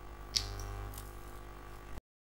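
Faint steady hum of room and microphone noise, with a single short click about a third of a second in.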